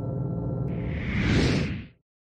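Intro music with steady held tones, joined about halfway through by a swelling whoosh sound effect that peaks and then fades as everything drops out to silence near the end.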